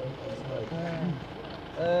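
Low murmur of several people's voices, with one voice calling out louder and held briefly near the end.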